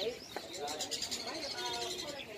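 Caged songbirds chirping and calling in quick, overlapping high notes.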